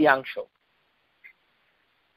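A man's voice, thin and narrow as if heard over a phone line, ends a word in the first half-second, followed by a pause of about a second and a half broken only by a faint short blip.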